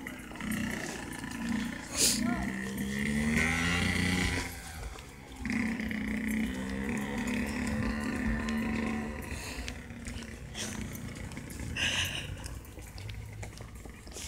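Dirt bike engine running as it rides along the street, its pitch rising and falling as it revs and changes gear.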